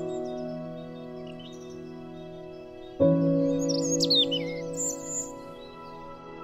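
Slow new-age background music of held chords, a new chord entering suddenly about three seconds in. Birdsong chirps sound over it in the second half.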